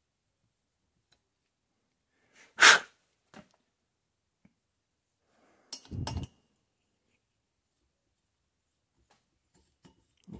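Mostly quiet workshop, broken by one loud, short sneeze about two and a half seconds in, then a brief knock and rattle of metal around six seconds in as a valve stem is worked in its cylinder-head guide.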